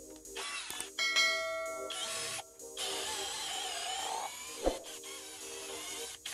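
A bell-like notification chime rings about a second in, then a cordless drill runs for about a second and a half as it bores into wood, its pitch wavering, all over background music.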